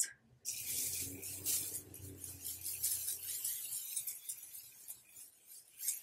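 Setting spray bottle misting onto the face: a run of quick hissing spritzes lasting about four seconds, then one more short spray near the end.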